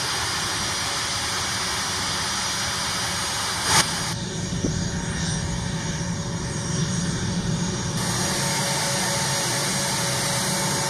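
Jet aircraft engines running steadily on the ground, the A-10's twin turbofans, heard as a continuous rushing noise, with a short loud burst just before four seconds in.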